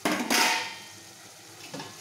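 Chopped ridge gourd sizzling in hot oil in an aluminium kadai: a loud hiss at the start that dies down over about a second.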